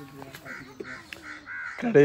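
Crows cawing in the background, a quick series of short caws, over a low steady hum.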